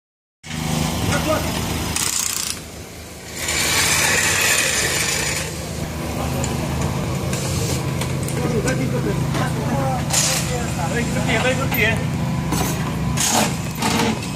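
Rally service-area work: a steady low mechanical hum runs throughout, with background voices. Bursts of high hiss from compressed-air tools on an air hose come about two seconds in, again for a couple of seconds from about three and a half seconds, and briefly near ten and thirteen seconds.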